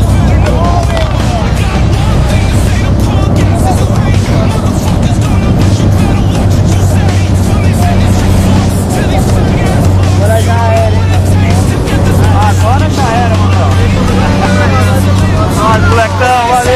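Small propeller plane's engine droning steadily, heard from inside the cabin, with music playing over it.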